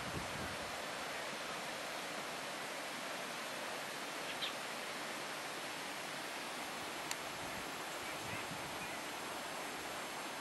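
Steady, even outdoor hiss with no distinct source, with a faint short high chirp about four seconds in and a small click about seven seconds in.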